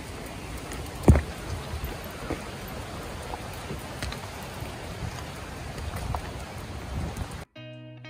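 Steady outdoor background hiss with one sharp thump about a second in and a few faint clicks. The hiss cuts off suddenly near the end and soft music with held notes starts.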